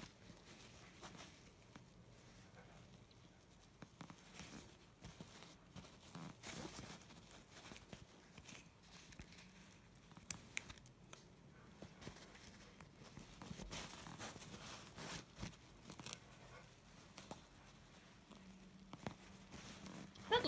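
Faint rustling, scratching and crinkling of a Noso adhesive repair patch being handled and pressed onto a backpack's nylon seam, with scattered short scratches and clicks, busiest in the middle.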